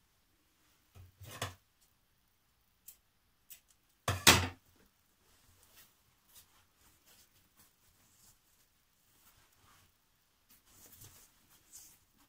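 Polycotton fabric rustling faintly as a sewn apron strap is handled and turned right side out by hand, with a soft knock about a second in and one sharp knock about four seconds in.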